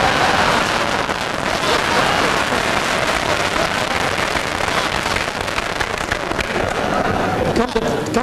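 A room of dinner guests laughing and applauding: a dense, steady clatter of many hands clapping with laughter, easing slightly near the end.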